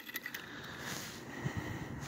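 Quiet handling noise: a few light clicks near the start and soft knocks later on as a handheld digital hanging scale is fumbled and hooked on, over a faint steady hiss.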